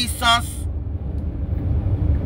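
Low, steady rumble of a car's cabin, picked up by a phone's microphone.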